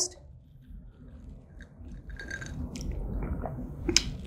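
A person sipping a drink from a glass and swallowing: quiet mouth and throat sounds, mostly in the second half.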